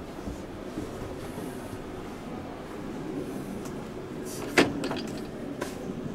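A caravan's interior cabinet door being handled: one sharp latch click about four and a half seconds in, then a couple of lighter clicks, over a steady low background noise.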